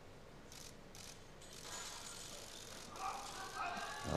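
Faint competition-hall ambience during a weightlifting attempt: a low murmur with a few soft clicks, and faint crowd voices rising in the last second as the clean is caught.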